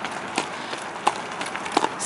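Hoofbeats of a Saddlebred horse trotting on a gravel driveway while pulling a two-wheeled cart: a few sharp, uneven knocks over a low steady rustle.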